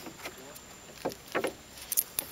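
Quiet handling sounds in a small wooden boat, with a brief voice about a second in and a sharp knock near the end.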